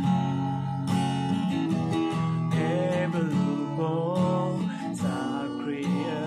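Acoustic guitar strummed steadily, accompanying singing; the sung melody comes in clearly a couple of seconds in and again near the end.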